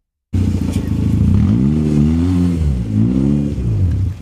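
Toyota-sourced engine of an Afghan-built prototype sports car running, revved up and let back down twice. It starts abruptly about a third of a second in.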